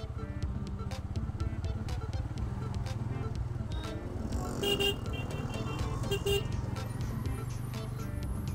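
Motorcycle engine running at low speed in stop-and-go traffic, under background music. A vehicle horn toots briefly twice, about five and six seconds in.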